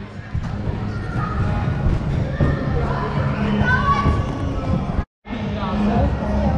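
Thuds of children jumping on trampolines and their voices in a large echoing hall. The sound cuts out briefly about five seconds in.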